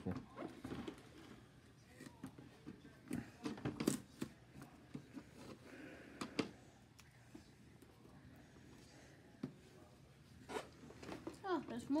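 Hard plastic parts of a Keurig K-Compact single-serve coffee maker being handled and unpacked: scattered light clicks and taps with soft rustling, a few seconds apart.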